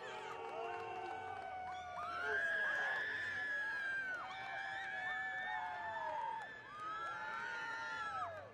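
Singing voice holding long notes of a second or two each, sliding up into each note and falling away at its end, as in a song.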